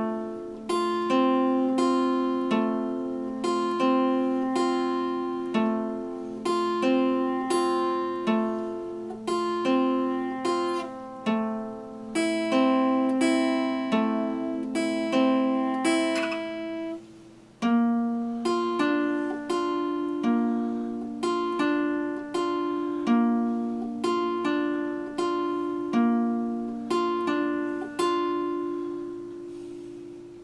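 Epiphone steel-string acoustic guitar fingerpicked: a steady flow of plucked notes, about two a second, each ringing and fading. The playing stops for a moment about halfway through, then resumes and lets the final notes ring out near the end.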